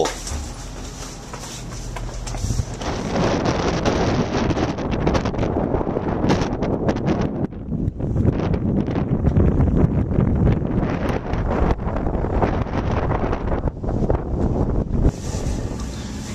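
Wind blowing across the microphone outdoors, loud and uneven, building a few seconds in and easing off near the end.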